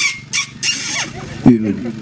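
A man's voice over a microphone: a few short hissing sounds in the first second, then a drawn-out call of "oy".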